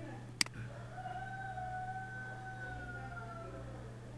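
A single sharp computer mouse click about half a second in, opening a menu. After it comes a faint, drawn-out pitched call that holds for about two seconds and falls away at the end, over a steady low electrical hum.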